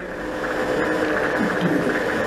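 Steady rushing background noise with a faint low hum underneath, the kind a room's ventilation or air conditioning makes.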